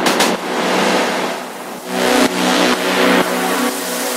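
Techno breakdown without the kick drum: a rushing noise sweep over sustained synth tones, with a held chord of synth notes coming in about halfway through.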